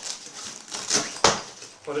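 Nylon fabric of a gear bag rustling and crinkling as an inner panel is pulled open by hand, with one sharp knock a little over a second in.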